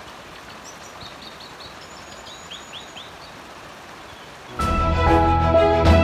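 Forest birds calling over a steady hiss: scattered short high chirps and a quick run of three curved whistled notes. Background music with a steady beat comes in about four and a half seconds in.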